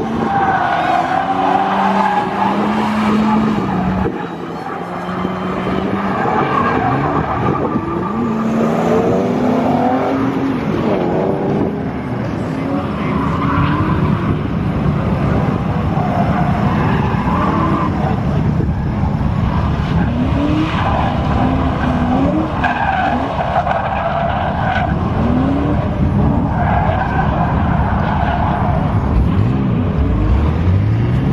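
Fox-body Ford Mustang drifting: the engine revs up and down again and again through the slides while the tyres squeal on the asphalt.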